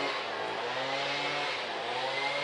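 An engine running steadily: a low, even drone with a thin high whine over it, which the speaker calls the "street blower".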